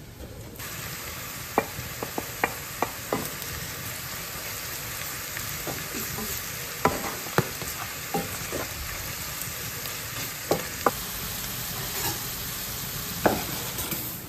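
Shredded carrots and dried mushroom pieces sizzling in a frying pan while a wooden spatula stirs them, clicking and scraping against the pan about a dozen times. The sizzling starts about half a second in, and there is a louder knock near the end.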